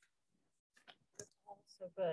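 Near silence, with a few faint short clicks and brief fragments of quiet speech in the second half.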